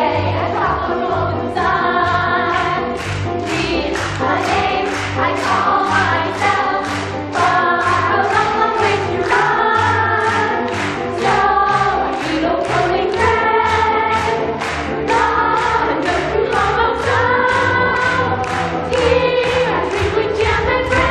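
A group of young voices singing together in a musical number, accompanied by a live pit band with a double bass, keeping a steady beat.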